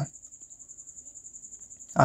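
A cricket chirping: a continuous high-pitched trill, pulsing rapidly and evenly.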